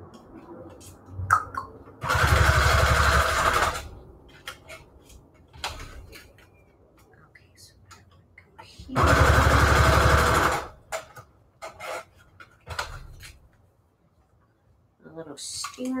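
Electric sewing machine stitching through paper, run in two bursts of a second and a half or so each, several seconds apart, with small clicks of paper and machine handling in between.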